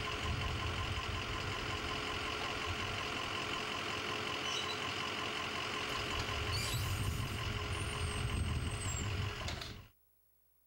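Bus idling while the motor of a Ricon wheelchair lift runs, raising the platform to the bus floor and then folding it upright. A steady low hum with a faint constant tone through most of it, growing louder in the last few seconds before fading out.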